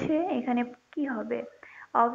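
Speech: a woman talking in short phrases with brief pauses.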